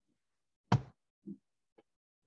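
A sharp knock about two-thirds of a second in, followed by a softer, duller thump and a faint click.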